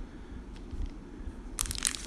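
Faint low handling bumps, then about one and a half seconds in, the crisp crinkling of a sealed trading-card pack's crimped wrapper as it is picked up by hand.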